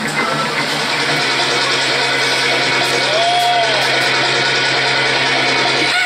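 Live rock band playing a dense, steady mix of electric guitar and bass, with one note that glides up and back down about halfway through.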